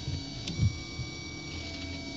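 3D printer running mid-print: a steady electrical whine and hum from its motors, with a faint tick and short low motor movements about half a second in.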